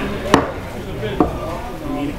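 Two sharp knocks of something hard being struck or set down, the first and loudest about a third of a second in, the second just past a second in, over a low murmur of crowd voices.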